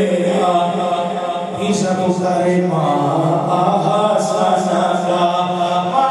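A man singing a naat, an Urdu devotional poem in praise of the Prophet, unaccompanied, in long held notes.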